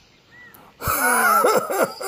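A single thud just under a second in, then a loud, breathy, groaning voice sound that swoops up and down in pitch.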